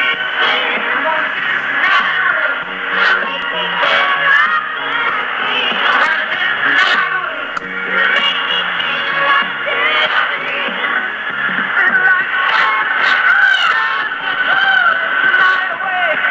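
Music from a shortwave AM broadcast on 7490 kHz, played through a JRC NRD-93 communications receiver. It is continuous and loud, and it sounds muffled, with the treble cut off above about 4 kHz.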